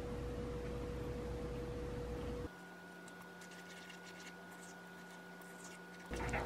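Wooden spoon stirring a thick oat, cocoa and almond-milk mixture in a ceramic bowl, with faint scraping against the bowl over a steady electrical hum. About two and a half seconds in, the background hum suddenly drops to a quieter floor.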